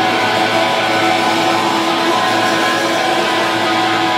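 Live rock band playing loud and steady, electric guitars and bass holding sustained, droning chords.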